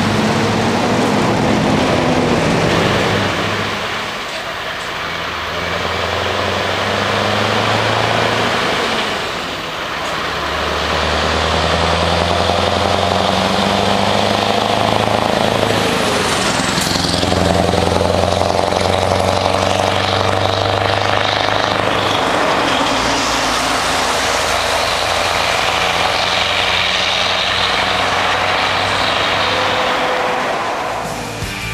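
Scania R-series truck with a trailer approaching and accelerating, its engine note dropping and building again in steps through gear changes. It passes close about halfway through with a falling pitch, then pulls away and fades.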